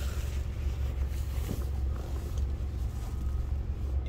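Steady low rumble inside a 2022 Ford F-150's cab, with a few faint knocks as the rear seat is handled.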